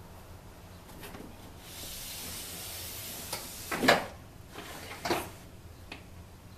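Whiteboards being taken down and put up on a wall: a faint knock, then a sliding, rustling sound for about a second and a half, then two knocks about a second apart, the first the louder.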